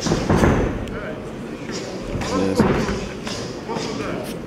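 Dull thuds of mixed-martial-arts ground fighting: a fighter on top striking and grappling an opponent pinned on the cage mat. The loudest thuds come about a third of a second in and again past the middle, with voices calling out.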